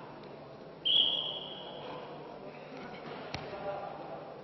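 A referee's whistle blown once, a shrill steady note of about a second that starts sharply and fades, over the murmur of a hall crowd. A single sharp click follows near the end.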